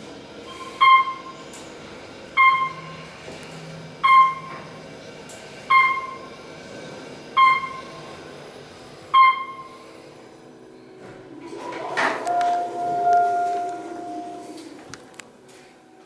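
Otis elevator's electronic chime ringing seven times, evenly about every one and a half seconds, over the car's low hum. Near the end the doors slide open with a steady motor whine.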